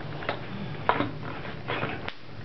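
A few light clicks and taps as a prop gun is handled and seated in a costume holster.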